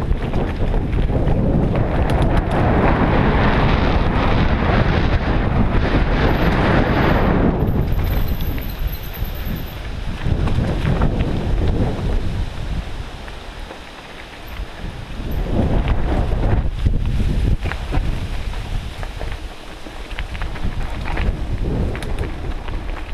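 Wind buffeting a helmet-mounted camera's microphone during a mountain bike ride on a dirt singletrack, with tyre and trail rattle underneath. It is loudest in the first third, eases off around the middle and again near the end, then picks back up.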